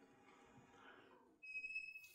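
Near silence for over a second, then chalk writing on a blackboard near the end, with a brief, steady, high-pitched chalk squeak.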